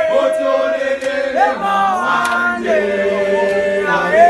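Young men singing a Zulu gwijo chant unaccompanied, several voices holding long notes together and sliding down to new pitches about a second and a half in and again near three seconds.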